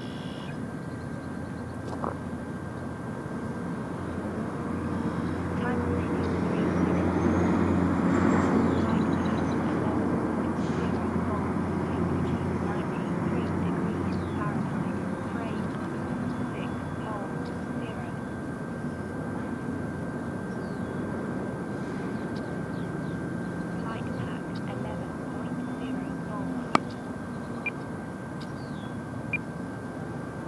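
Electric motor and propeller of an RC Edge 540T aerobatic plane droning overhead. It swells louder a few seconds in and then slowly fades as the plane moves off. A single sharp click comes near the end.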